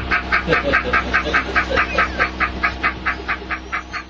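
A man laughing hard in a rapid, even string of high 'ha' bursts, about six a second, getting fainter toward the end, over a low steady hum.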